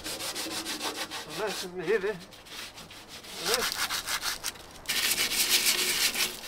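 Green abrasive scouring pad scrubbed quickly back and forth over the painted steel of a narrowboat's stern deck, keying the old paint so the undercoat primer will stick. Rasping strokes, loudest near the end.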